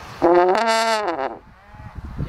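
French horn playing a single loud note for about a second, sliding up into the pitch at the start and then holding it steady.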